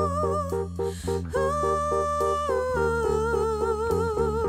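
A woman singing with a live band: she holds long notes with vibrato, pausing briefly just under a second in. The band plays a steady bass line and a short chord figure that repeats several times a second.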